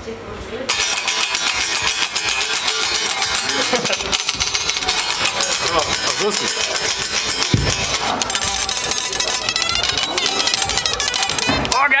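Electric guitar (a Fender) played through an amplifier with a distorted tone: a fast-picked riff that starts about a second in and runs on with rapid, dense strokes.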